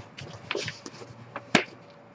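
Large diamond painting canvas with its plastic cover film being handled and flexed: a few short crinkles and taps, with one sharper click about one and a half seconds in.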